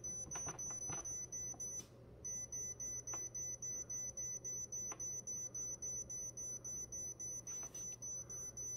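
Drew Barrymore Beautiful 14-cup touchscreen coffee maker's control panel beeping in a rapid, steady string of short high beeps while the clock-set plus button is held and the time scrolls forward. The beeping breaks off for a moment about two seconds in, then resumes and stops near the end.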